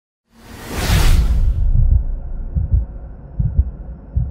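Opening sting of a TV programme's intro: a loud whoosh swells and fades within the first second and a half, over deep, uneven bass thumps that carry on into the theme music.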